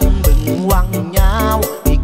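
A Thai luk thung song: a singer's wavering voice line over bass and a regular drum beat.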